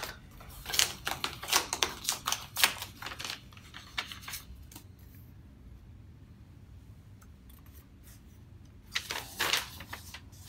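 A letter and its packaging being handled: a run of crisp paper rustles and clicks over the first four seconds or so, a quiet stretch, then another short flurry of rustling near the end.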